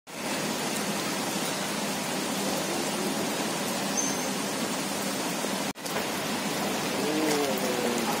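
Steady rain falling, an even hiss, with a sudden brief break about three-quarters through and faint voices near the end.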